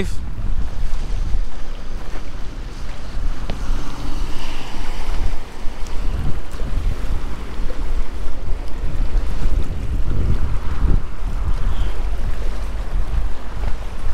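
Wind buffeting the microphone in uneven low gusts, over the wash of small waves in shallow, choppy bay water.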